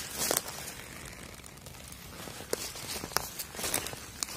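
Soft rustle of footsteps on dry fallen leaves and twigs on a forest floor, with a few sharp crackles.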